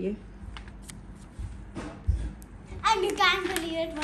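Paper crafts being handled, giving soft scattered rustles and light clicks, followed near the end by a child's high voice.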